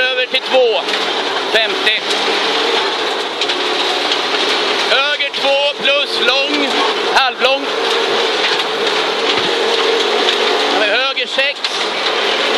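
Cabin sound of a 1983 Audi Quattro Group B rally car at speed: its turbocharged five-cylinder engine running under load over a steady rush of tyre and road noise. A voice breaks in briefly near the start, about five seconds in, and again near the end.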